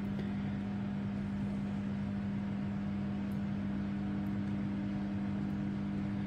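Steady, unchanging hum of a microwave oven running while it heats food.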